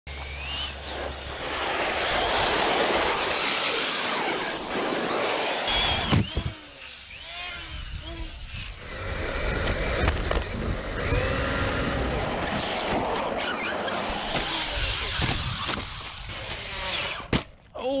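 Brushless electric motor of a 1/7-scale Arrma Fireteam RC truck whining up and down in pitch with the throttle, over heavy tyre and wind noise from an onboard camera. The sound breaks off abruptly a few times between cut-together runs.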